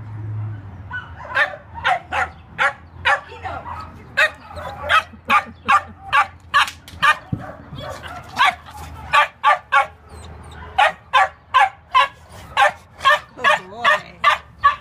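A dog barking repeatedly at a chain-link fence in quick runs of short barks, about three a second, starting about a second in and pausing briefly twice.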